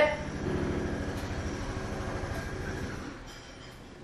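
Construction machinery outside, heard from indoors: a steady low rumble with a rapid pulsing that dims somewhat near the end.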